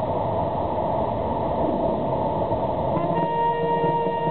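Steady noise of surrounding traffic. About three seconds in, the ceremonial military band's brass comes in on a long held note.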